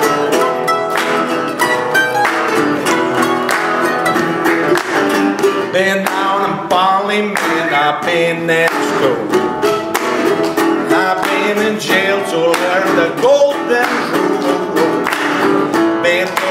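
Mandolin picked in a blues, with a man's voice singing over it for the second half.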